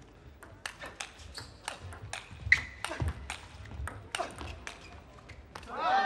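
Table tennis rally: the ball clicking sharply off the rackets and the table in an irregular series of hits, several a second. A loud shout rises near the end.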